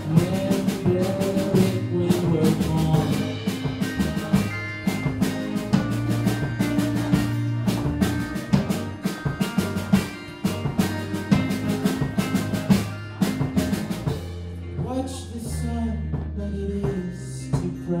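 A live indie-pop band playing an instrumental passage: a drum kit keeps a steady beat under sustained low bass notes and other instruments. The drums thin out for a few seconds near the end.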